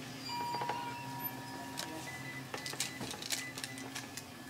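Electronic beeping and clicking at a shop counter. A steady beep is held for about two seconds, then a higher beep follows, among sharp clicks and rattles typical of a cash register in use, over a steady low hum.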